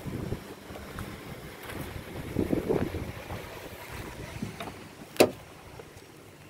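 Wind buffeting the microphone with some low handling bumps, and a single sharp clack about five seconds in as the Ford Ranger pickup's door is opened.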